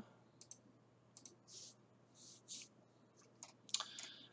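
Faint clicking from a computer mouse and keyboard at a desk: a few pairs of short sharp clicks, with some soft hissy sounds in between.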